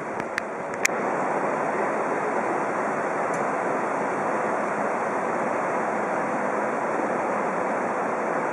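Steady, even rushing noise with no rhythm of wiping strokes in it, and a few sharp clicks within the first second.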